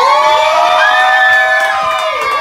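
A crowd of guests screaming and cheering in excitement, several high voices holding long shrieks together.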